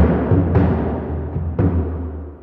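Sampled dhol drum part playing back soloed from the sequencer: a few deep strokes that ring on in the low end, the clearest about a second and a half in. Its low mids are being cut with EQ to take out mud.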